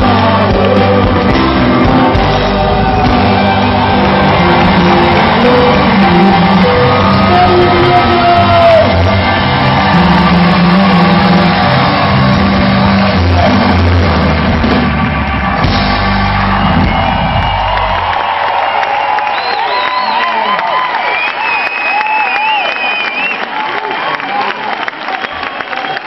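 Live a cappella group singing in harmony over a deep vocal bass line. The bass stops about eighteen seconds in, and higher wavering voices and whoops carry on.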